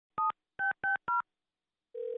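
Four touch-tone phone keypad beeps dialed in quick succession, each a short two-note tone, the second and third the same. A steady ringing tone on the line starts right at the end.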